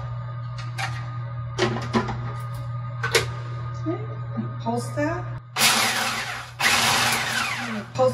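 Food processor pulsed twice, about a second each, in the second half, chopping parsley, pumpkin seeds, garlic and olive oil into pesto. Before that, a few clicks and knocks as the lid and bowl are handled.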